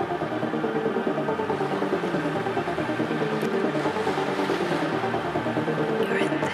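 Dark psytrance track: dense electronic synth layers with sustained tones over a fast, steady pulse.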